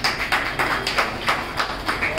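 Hands clapping in steady applause, about three sharp claps a second, as a gift is presented.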